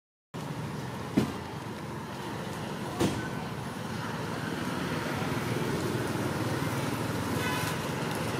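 Steady outdoor background rumble like distant road traffic. Two sharp knocks come about one and three seconds in, and a brief high-pitched call sounds near the end.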